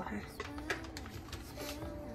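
A woman says a short 'ha', then hums a few low notes. A few light clicks sound underneath.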